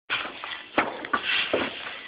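Shovel blade scraping and digging into a deep layer of loose oats on a barn floor, a few scrapes in quick succession.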